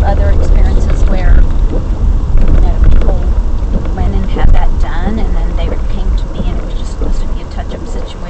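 People talking inside a moving car, over the steady low rumble of road and engine noise in the cabin.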